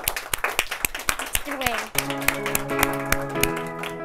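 Hand clapping, quick and irregular. About halfway in, guitar music starts with sustained chords under the clapping.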